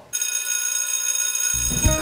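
A bell ringing steadily for about a second and a half, then stopping.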